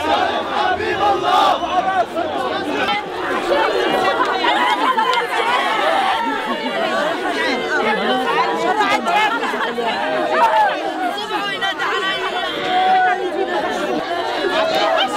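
A dense crowd of mourners' voices, many people talking, calling and crying out at once with no break, women's weeping and wailing among them.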